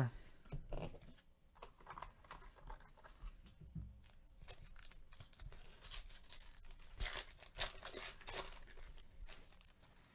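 Foil wrapper of a 2014 Bowman Draft hobby pack of trading cards being torn open and crinkled by hand, with the quiet flick and slide of cards being handled. The crackly tearing is densest about six to eight seconds in.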